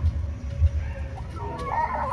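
Chickens clucking, with the calls starting near the end, over low thumps and rumble; the loudest thump comes about a third of the way in.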